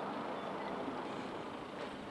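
Steady outdoor background noise: an even rush with no voices or distinct events, of the kind heard from road traffic.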